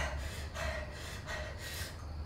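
A person's heavy, gasping breaths, several in a row, each a short rush of breath.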